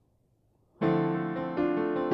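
Yamaha digital piano starting to play a little under a second in: a D minor seventh chord held in the left hand while the right hand plays notes in pairs (doublets) stepping up the white keys, a new note about every half second.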